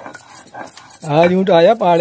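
Stone muller scraping and clicking on a flat stone grinding slab (sil-batta) as green chutney is ground by hand, with a person's voice coming in loudly over it about halfway through.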